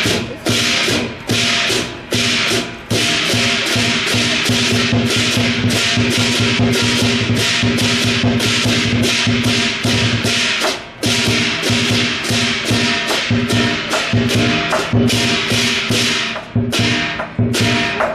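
Chinese lion-dance percussion playing loudly: rapid drum beats with crashing cymbals over a steady ringing, dropping out briefly a few times.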